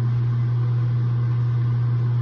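A bathroom ceiling exhaust fan's motor gives a steady, unchanging low hum.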